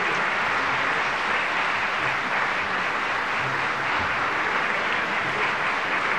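Audience applauding steadily at the end of a live orchestral song.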